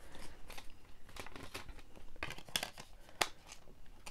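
Clear plastic disc case and paper inserts being handled: irregular light clicks and rustles, with a few sharper plastic clicks in the second half.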